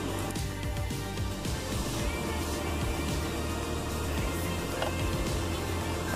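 Background music with a steady low bass line running under the silent repair footage.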